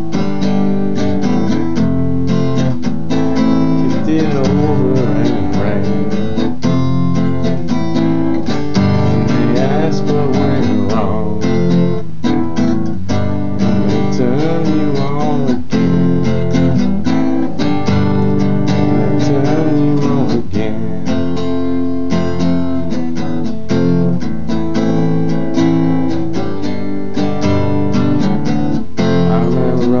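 Acoustic guitar, capoed, strummed in a steady rhythm: an instrumental passage between sung lines of a song.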